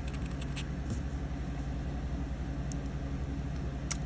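A steady low hum, with a few faint scrapes of a plastic scraper on a scratch-off lottery ticket in the first half-second and a couple of light clicks later.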